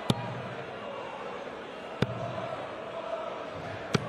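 Three steel-tip darts striking a Winmau bristle dartboard, one sharp thud about every two seconds, over the steady murmur of the arena crowd.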